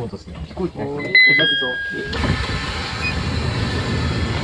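Electric train standing at a station: a short electronic chime of descending notes sounds about a second in, then a steady rush of air starts about two seconds in.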